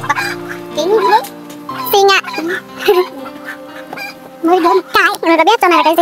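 Poultry calling in short, harsh calls that bend in pitch, a few at first and then a quick run of them over the last second and a half, over steady background music.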